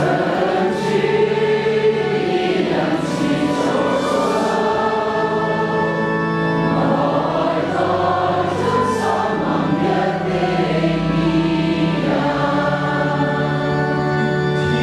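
A congregation singing the refrain of a Chinese responsorial psalm together, several voices at once, over steady held notes of an instrumental accompaniment.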